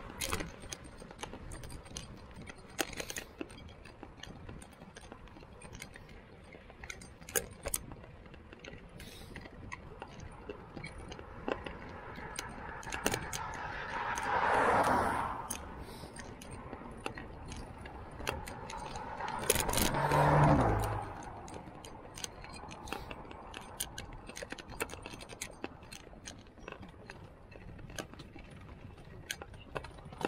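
Fat bike rattling and clicking as it rides over a rough, wet road, its gear jangling. Two motor vehicles pass with a rise and fall of tyre noise on the wet road, one about halfway through and a louder one about two-thirds of the way in.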